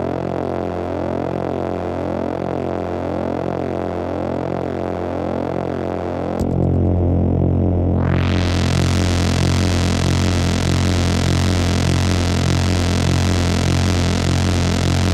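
Analog VCO drone run through a Polivoks voltage-controlled filter: a steady low buzzing tone with a slow wavering in its overtones. About six seconds in it jumps louder and goes dull, then over a second or two the filter opens and the tone sweeps up into a bright, hissy buzz that holds to the end.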